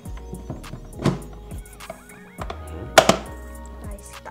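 Hard plastic knocks and clunks from a SHAD SH59X motorcycle top case as its expandable body is raised to its second size position. Two louder knocks come about a second in and near the three-second mark.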